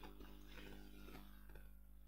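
Near silence: faint room tone with a low steady hum and faint music in the background.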